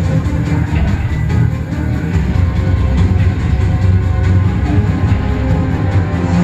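Dark, ominous film-score music with a heavy, dense bass, playing from a home screen's speakers into the room.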